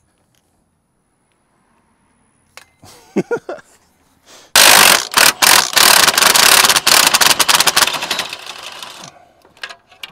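Red Milwaukee cordless impact wrench hammering on an exhaust downpipe bolt to loosen it: a few short blips about four and a half seconds in, then a loud, rapid run of impacts for about three seconds that fades out near the end.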